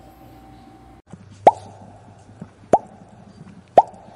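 Outro sound effect: three short pops, about a second and a quarter apart, each quickly rising in pitch and leaving a brief tail. They start after a second of faint room tone.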